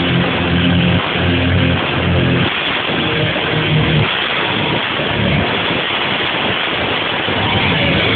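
Live rock band playing loud, with electric guitar and bass holding heavy low chords that change every second or so over drums. The sound is thick and muffled at the top end.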